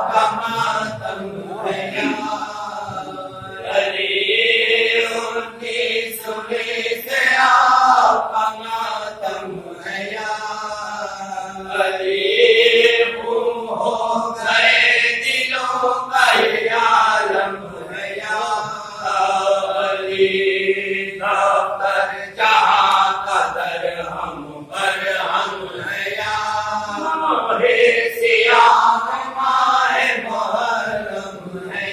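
Men's voices chanting a marsiya, an Urdu elegy, unaccompanied: a lead reciter with two others joining in long held notes that rise and fall slowly.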